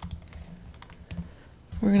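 A few faint, scattered clicks from working a computer, over a low steady hum; a woman's voice starts near the end.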